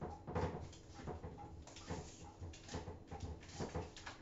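Kitchen clatter: an irregular run of short knocks and clicks from pots, utensils and a knife being handled on the counters.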